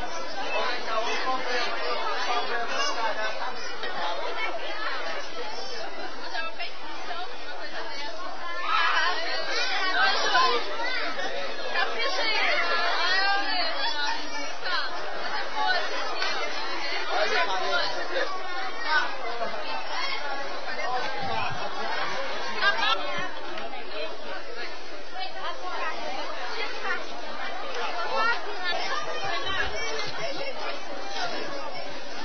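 Chatter of a crowd of people talking at once, many overlapping voices with none standing out. It swells a little louder for a few seconds about a third of the way in, heard through a camcorder's dull, narrow-sounding microphone.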